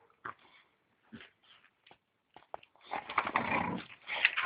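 Boxer dogs at play: a few brief dog sounds, then loud, rough play growling from about three seconds in.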